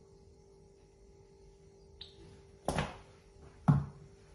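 A plastic squeeze bottle handled and set down on a hard countertop: a small click about halfway through, then two knocks about a second apart near the end, the second louder, over a faint steady hum.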